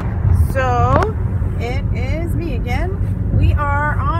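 Steady low rumble inside a car's cabin, with a woman's voice talking over it in short phrases.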